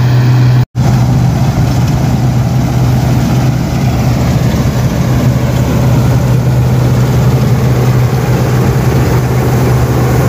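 Combine harvester running steadily under load as it cuts a rice crop, a heavy engine hum with dense machinery noise over it. The sound cuts out completely for an instant less than a second in, then carries on unchanged.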